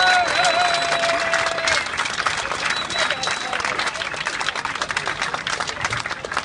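Crowd applauding and clapping, with a single long held shout over it at first. The clapping eases a little after about two seconds but keeps going.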